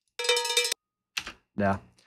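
Cowbell sound effect from a cartoon sound library, short rapid shakes, playing back for about half a second, followed by a short click.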